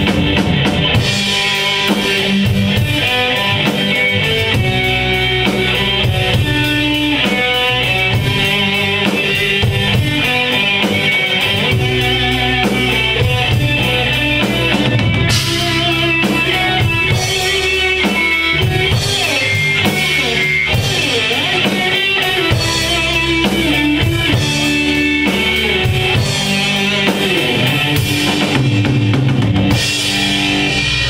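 Live rock band playing loudly and steadily with drum kit and electric guitar, the band including a violin and bass guitar.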